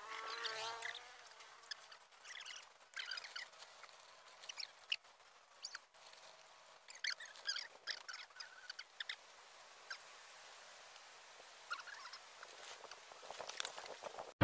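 Faint outdoor ambience with scattered short, high-pitched chirps of small wild creatures and a few light clicks. The chirps come in clusters, thickest about a third and two thirds of the way through.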